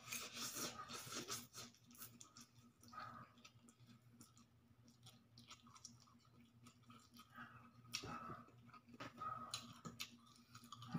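Quiet mouth sounds of a person eating pancit canton noodles: a slurp as a forkful goes in, then chewing with small wet clicks.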